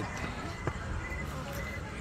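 Steady low background noise with one faint click about two-thirds of a second in.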